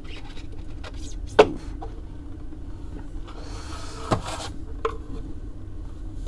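Hard plastic display case and base being handled: a sharp click about a second and a half in, then a brief scraping rustle with a knock a little later, over a low steady hum.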